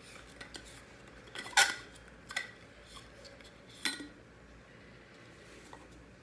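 Cap being unscrewed and lifted off a stainless-steel insulated water bottle: a few sharp clicks and clinks, the loudest about one and a half seconds in, others near two and a half and four seconds.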